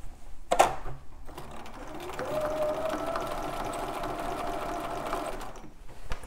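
Bernina domestic sewing machine stitching in a steady run while free-motion quilting, its motor whine rising a little and then holding one pitch, and stopping shortly before the end. A brief click comes about half a second in.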